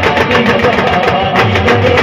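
Adivasi rodali band music: a fast, steady drum beat under a melody line and bass.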